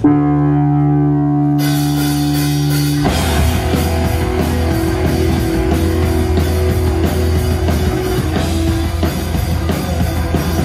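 A live rock band starts a song. A single held chord rings for about three seconds, with cymbals coming in partway through. Then drums, bass and guitars all come in together and play loud with a steady beat.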